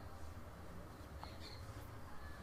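Faint anime episode soundtrack playing low in the mix, with a few short high-pitched sounds from about a second in.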